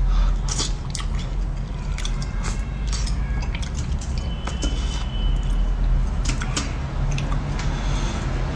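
Close-miked eating sounds: a bite of soft fish taken off chopsticks, then wet chewing with many small mouth clicks and smacks, over a steady low hum.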